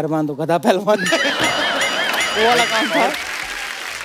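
Studio audience laughing and clapping, with a high warbling, bleat-like tone wavering evenly over it for about two seconds.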